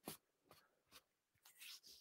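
Near silence: room tone with a faint click at the start and a soft rustle near the end.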